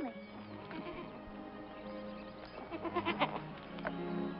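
Background music with a goat bleating once, a short quavering call, about three seconds in.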